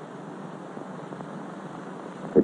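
Steady hiss of an old film soundtrack, an even noise with no distinct events.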